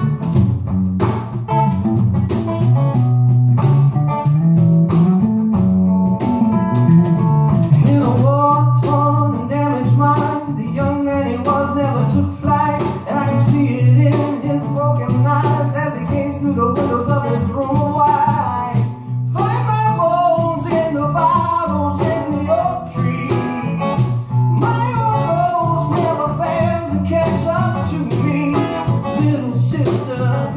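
A small band playing a song live in a room: strummed acoustic guitar over a low bass line from a six-string Bass VI, with singing over it.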